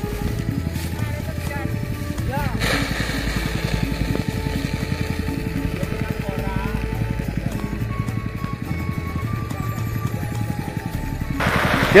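Small engine of a rice threshing machine running steadily, with a fast, even pulse.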